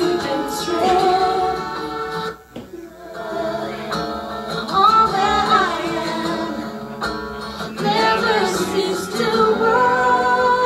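Two women singing a worship song into microphones, with faint instrumental backing. There is a short break in the singing about two and a half seconds in.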